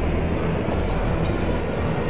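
Cartoon sound effect: a steady rushing rumble with background music underneath.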